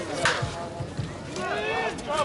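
Voices of people talking across a softball field, with one sharp smack about a quarter of a second in.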